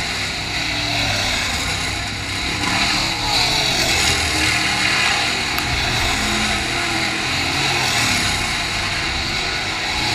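Several dirt late model race cars' V8 engines running hard through the turn, their pitches rising and falling as they go by, loudest about three seconds in.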